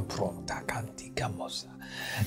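Quiet background music with steady held notes, with soft whispering over it.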